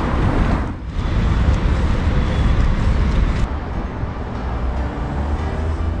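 City street traffic noise with a heavy low rumble. It turns duller about three and a half seconds in, and music comes in faintly near the end.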